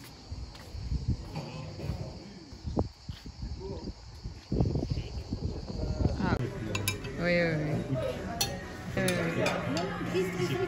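Cicadas buzzing steadily over low, uneven rumbling, cutting off suddenly about six seconds in. Then come voices talking at a table, with a few sharp clinks of glasses and cutlery.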